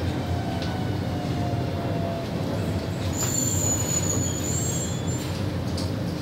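Inside a C751C metro train coming to a halt at a platform: a steady low running hum, with a faint falling whine from the drive that dies away in the first two seconds. A thin high-pitched whine starts about three seconds in and lasts nearly two seconds.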